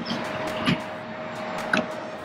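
CCS charging handle with a Tesla CCS adapter being pulled out of the car's unlocked charge port: two short clicks about a second apart, over a steady hum.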